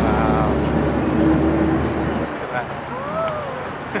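Low rumble of road traffic that drops away a little over two seconds in, with people's voices over it.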